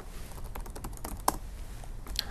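Laptop keyboard typing: a few soft, irregular keystrokes, one louder than the rest a little after halfway.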